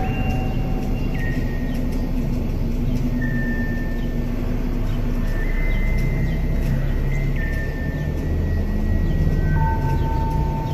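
A steady low rumble, like wind buffeting the microphone, with a slow line of long held high notes over it that step from one pitch to the next every second or two.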